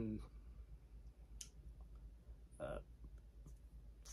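Quiet room tone in a pause between words, broken by a single faint, short click about one and a half seconds in and a brief hesitant 'uh' a little past the middle.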